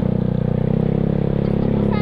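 Yamaha Mio Sporty scooter's single-cylinder four-stroke engine running steadily under throttle while riding along.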